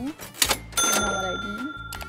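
Cash-register 'cha-ching' sound effect: a sharp clack about half a second in, then a bell ringing on several high tones.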